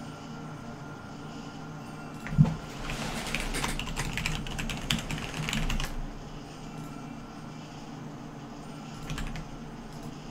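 Typing on a computer keyboard: a quick run of keystrokes lasting about three and a half seconds, opening a couple of seconds in with one sharp, loud key strike, then a brief few clicks near the end, over a steady low hum.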